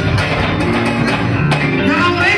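Live band dance music with a steady beat and a melody line, played loudly in a hall.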